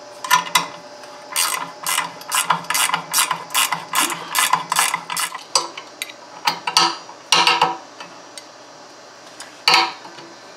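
Ratcheting wrench clicking as it turns a nut on the idler-arm spring bolt of a mower deck: a run of clicks about three a second, a short break, a few more, then a single click near the end.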